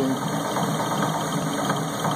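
Metal lathe running, its spindle spinning a brass bushing while the tool turns it down to diameter: a steady mechanical whir.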